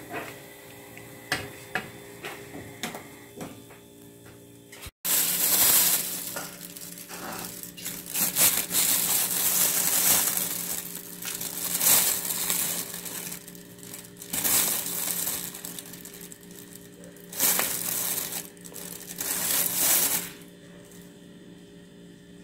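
A plastic bag of powdered sugar crinkling and rustling loudly in repeated bursts of one to two seconds as it is handled. Before that, a few light clicks of a metal fork against the frying pan.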